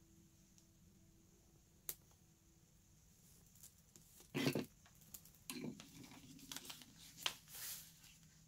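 Paper planner stickers and a sticker sheet being handled: a single faint click about two seconds in, then rustling and crinkling of paper from about four seconds in.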